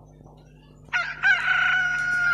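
A rooster crowing once, starting about a second in: a short rising opening note, then a long, loud held note.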